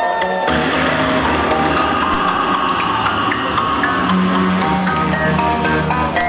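Live electronic band music over a club PA, instrumental with no vocals: a dense, sustained passage with a steady bass comes in about half a second in, and short repeated notes return near the end.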